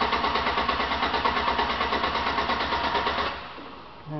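A truck's starter motor cranking the engine in an even, rhythmic pulse without it firing, then stopping a little over three seconds in. The starter is drawing about 150 amps as it keeps the engine turning.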